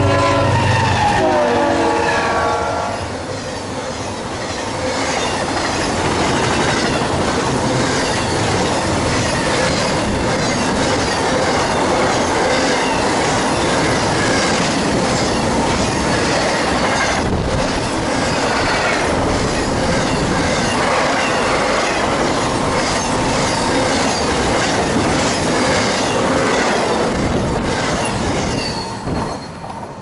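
BNSF intermodal freight train passing at about 69 mph. The lead locomotive's horn chord drops in pitch as it goes by over the rumble of its diesel engines, then comes a long, steady rush and clatter of trailer-carrying intermodal cars with rhythmic wheel clicks. The sound falls away quickly as the last car passes near the end.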